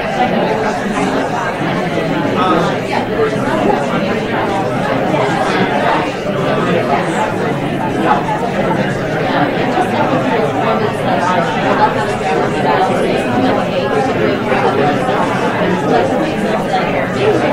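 Many people talking at once in a large room, the audience discussing in pairs: a steady hubbub of overlapping voices with no single speaker standing out.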